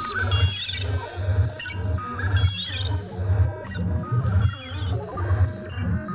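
Korg Volca synthesizers playing a techno loop. A low bass note pulses about three times a second under short, high, chirping synth notes.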